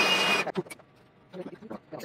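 Shop vacuum running with a steady whine as its hose sucks water off a tube-amplifier chassis, then cutting off sharply about half a second in. Light knocks and handling sounds follow.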